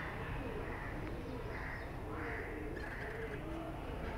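A pigeon cooing faintly in the background, in a run of short wavering calls.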